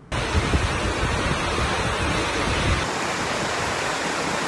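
Strong storm wind rushing through coconut palms and trees, with gusts buffeting the microphone: a steady, loud rush of noise with a low rumble underneath.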